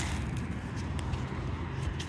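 Kelp meal sprinkled by hand onto a wallflower shrub's leaves: a few faint light ticks over a low, steady outdoor rumble.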